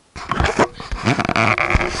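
Handling noise from a small camera being picked up and turned: rustling and rubbing on the microphone, with several sharp knocks.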